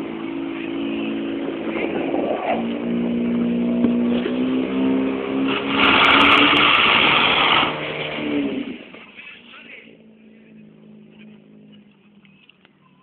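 Portable fire pump engine running hard, driving water through the hoses. About six seconds in, the loud hiss of the water jets striking the targets lasts roughly two seconds. Then the engine's pitch falls and it dies away at about nine seconds.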